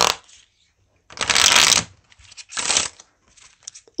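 A deck of poker playing cards being shuffled by hand: short papery bursts of riffling, the longest about a second in and another near three seconds, then a few light clicks near the end.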